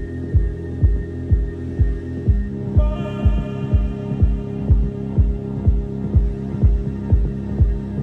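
House music from a DJ mix: a steady four-on-the-floor kick drum at about two beats a second under sustained synth chords. The chord shifts about two seconds in, and a brighter, higher synth layer comes in about a second later.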